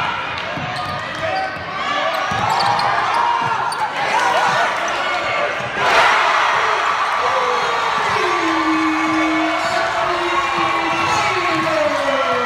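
Gym game sound at a basketball game: a ball dribbling and voices of spectators and players echoing in the hall, with a sudden louder swell of crowd noise about six seconds in.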